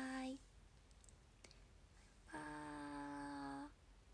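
A young woman's voice holding a long, steady-pitched 'baa' twice, drawing out a sing-song goodbye ('bye-bye'). The first ends just after the start and the second runs from a little past two seconds to near the end, with a faint click in the quiet gap between.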